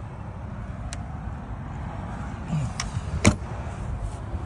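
Motorhome generator compartment door being shut: a light click about a second in, then a sharp latching knock as the door closes about three seconds in.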